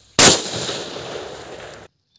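Explosion sound effect: a sudden loud blast followed by a noisy tail that slowly fades, then cuts off abruptly near the end.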